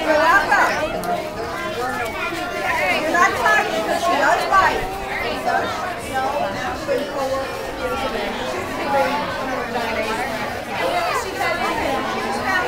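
Crowd chatter: many adults and children talking over one another at once, with no single voice standing out.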